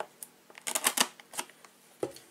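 Cardboard trading-card blaster box being handled on a table: a click, then a quick run of light taps and rustles about a second in.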